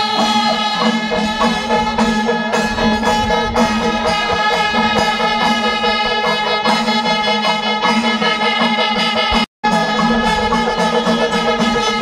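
Loud traditional festival music: a steady held drone with a melody moving above it and regular percussion beats. The audio drops out for an instant about nine and a half seconds in.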